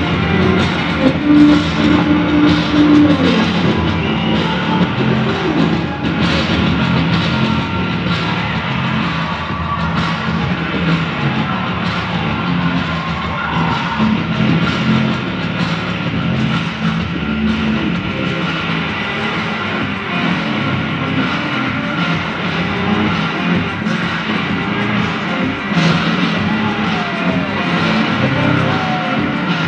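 Rock-style music from the intro video on the big stage screen, heard through the hall's speakers.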